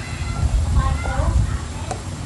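A few short, high-pitched vocal calls that rise and fall in pitch, clustered around the middle, over a steady low rumble.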